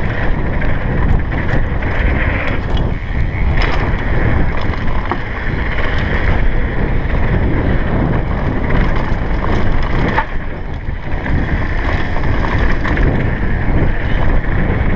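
Wind buffeting the action camera's microphone over the rumble of knobby tyres on a dirt trail as a downhill mountain bike descends at speed, with occasional knocks and rattles from the bike over bumps.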